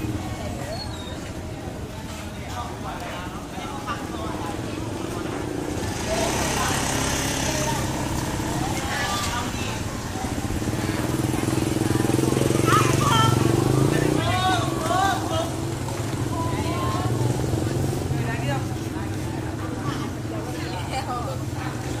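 Small motorcycle engines running steadily, louder for a few seconds about halfway through, under people talking.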